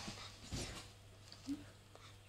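Glitter slime being squeezed and kneaded by hand on a wooden table: soft squelches, with a dull thump about half a second in and a short pitched squelch near the end.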